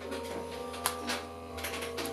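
Small clicks and light rattling from handling candy and plastic packaging on a table, the loudest click a little under a second in, over soft background music.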